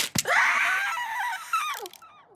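Two quick knocks, then a cartoon bird character's long, wavering scream that falls in pitch near the end.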